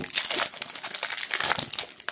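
The plastic wrapper of a Panini Premium Stock basketball card pack crinkling as it is torn open: a dense, continuous run of crackles.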